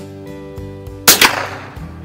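A single shot from a Winchester 52D .22 LR target rifle about a second in: one sharp crack with a short decaying tail, over background music.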